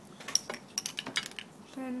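Small plastic and metal makeup containers clicking and clinking together as they are handled on a table while a brow gel is picked up: a quick run of about a dozen sharp clicks over roughly a second, the loudest near the start.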